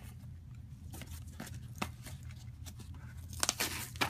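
Scattered clicks and light handling noises from hands working on a Dyson DC07's plastic cleaner head, with a quick run of sharper clicks near the end, over a steady low hum.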